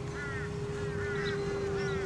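Radio-controlled Rare Bear model plane flying at a distance, its brushless electric motor and three-blade propeller giving a steady, even hum. Birds call repeatedly over it in short rising-and-falling chirps.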